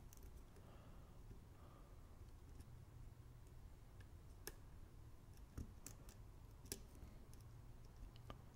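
A handful of faint, sharp, irregular clicks from a hook pick working the pin stacks of a pin-tumbler lock cylinder under light tension, with the lock sitting in a deep false set.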